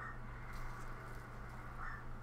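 Faint steady low hum of a small compact tracked loader's engine idling, with a few short, faint bird-like calls, one right at the start and one near the end.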